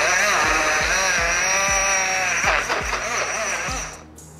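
Portable bottle blender's small motor whirring as it blends watermelon chunks into juice, its pitch wavering as the blades catch the fruit, stopping just before the end.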